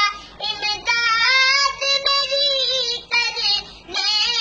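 A young boy singing a naat, drawing out long, wavering notes, with short pauses near the start and near the end.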